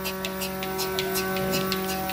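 Mini milking machine running: a steady motor hum with a quick, even ticking about five times a second.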